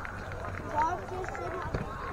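Several indistinct voices calling out, over a low steady rumble, with a soft knock near the end.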